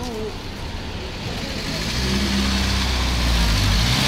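Street traffic: a motor vehicle's engine drones low and steady as it passes close by, growing louder from about halfway through.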